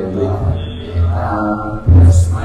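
Vaishnava prayers chanted in Sanskrit in a slow melodic recitation, the voice holding long steady notes, with a louder phrase starting near the end.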